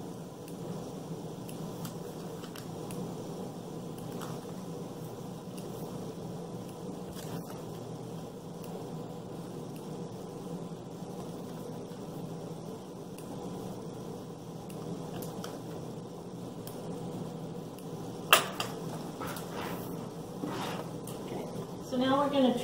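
Steady low room hum with a few faint, sparse clicks of small scissors snipping thread ends off paper-pieced fabric units, and one sharper click near the end.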